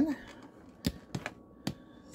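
A few short, sharp clicks and knocks, four in under a second, from a phone camera being handled and repositioned.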